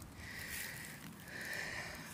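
Two faint, soft breaths through the nose close to the microphone.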